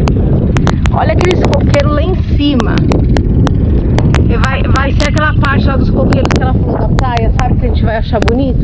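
Strong wind rumbling on the microphone, with muffled voices talking through it and frequent sharp crackles.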